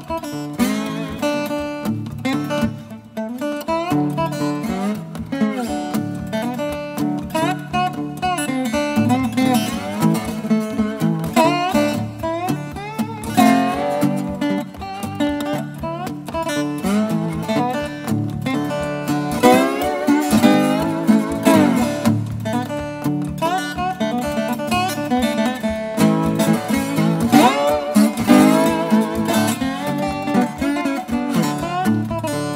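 Acoustic Weissenborn-style lap steel guitar by luthier Michael Gotz, played solo with a steel bar: fingerpicked blues over a steady, repeating bass pattern, with melody notes sliding up and down in pitch.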